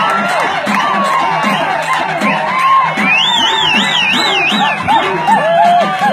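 Live karakattam folk music from drums and a reed pipe, with a crowd shouting and cheering over it. About three seconds in, a high warbling trill rises above the rest for a couple of seconds.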